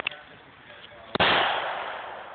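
A single handgun shot about a second in: a sharp crack whose report rings on and fades slowly over the following second.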